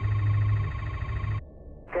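A steady electronic tone over a low hum, narrow in range like a radio channel, cutting off about one and a half seconds in. A fainter single-pitched beep follows just before radio speech begins.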